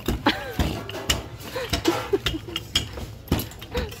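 Wooden rolling pin clicking and knocking against a stainless steel worktop in quick, irregular strokes as dumpling wrappers are rolled out by hand. Voices murmur in the background.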